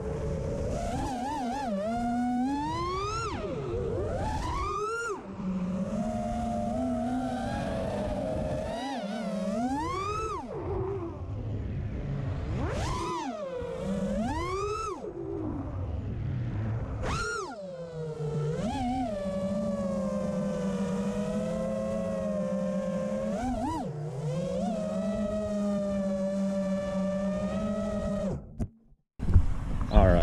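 An FPV racing quad's four brushless motors (Xing Cyber 1777kv on 6S) whining with their props, the pitch swooping up and down sharply with each throttle punch, roll and flip. In the second half the whine holds a steadier hum for several seconds, then cuts off briefly near the end.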